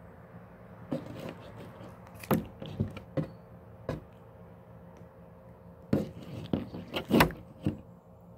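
Handling noise of pliers and hands working a frog carcass on a tabletop while pulling its skin off: irregular sharp knocks and scrapes in two clusters, one starting about a second in and a busier one near the end.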